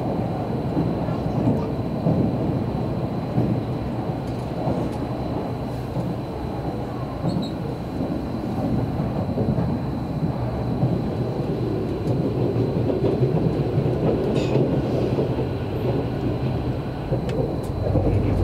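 Running noise inside the cabin of an Odakyu limited express train at speed: a steady low rumble of wheels on rail, with a faint high steady whine over it.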